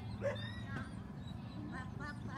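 A dog barking in short calls, the loudest about a quarter second in, over faint background chatter and a steady low hum.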